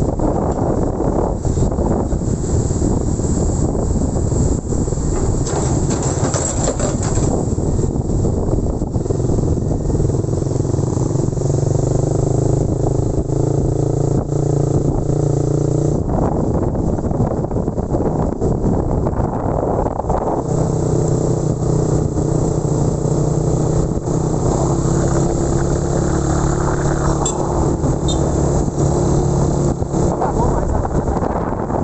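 Small motorcycle engine running under way, loud and steady, its pitch changing about halfway through and again a few seconds later as the bike changes speed.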